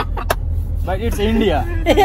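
Steady low rumble of a car's interior while driving on the road. A person's voice is heard over it from about halfway through.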